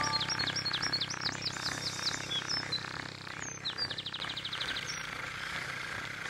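Small songbirds chirping: a run of quick downward-sweeping chirps, two or three a second, then a fast even trill about four seconds in. A music melody ends just as the birdsong begins.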